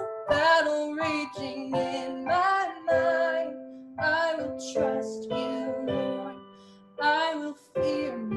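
A woman singing a slow worship song in short phrases, accompanying herself on a digital keyboard with a piano sound, its chords held under her voice.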